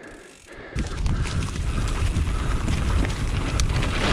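Mountain bike rolling fast down a dirt trail: tyre noise on the dirt with rattling clicks from the bike, and wind buffeting the camera microphone. It starts about a second in, after a brief quiet moment.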